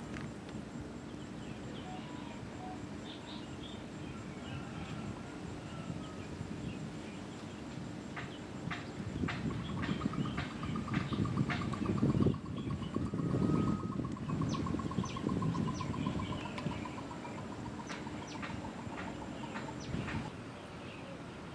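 Riverside ambience: scattered short bird chirps over a low background hum, with a long, fast trill that slowly falls in pitch through the second half. A low rumble swells about halfway through and eases off a few seconds before the end.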